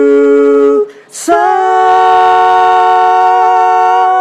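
Singing voices holding long notes, the drawn-out finish of a sung parody of a musical duet. There is a short break with an 's' hiss about a second in, then one long held note with a slight waver.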